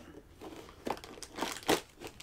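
A cardboard advent-calendar door being torn open by hand, with crinkling and a few short crackles, the sharpest near the end.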